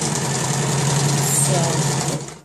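Janome electric sewing machine running steadily at speed, its motor hum carrying a rapid, even chatter of needle strokes as it stitches a straight run of seam.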